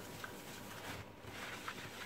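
Paper towel rubbed over a frying pan to dry it: a faint, soft rustling with a couple of light swishes.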